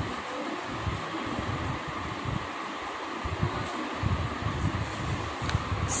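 Steady fan-like whir, with a pencil writing on a workbook page and faint low bumps of the book and hand.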